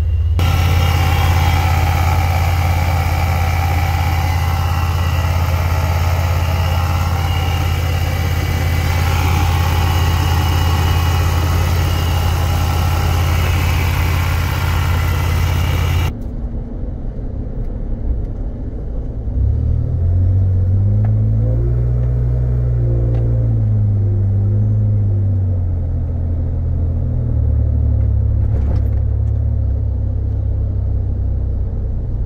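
The Vortech-supercharged 3.8 L V6 of a 2008 Jeep Wrangler Unlimited running steadily with a hiss over it. After a sudden change about halfway through, it is revved up, held and let back down, then blipped once more before settling.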